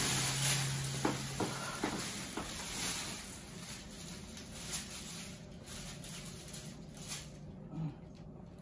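Plastic sheeting on an exam table rustling and crinkling as a person gets up off it, then soft footsteps on a hard floor that fade as she walks away.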